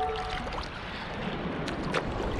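Sea water sloshing and splashing around a long-handled sand scoop being worked at the surface, with a short sharp knock near the end.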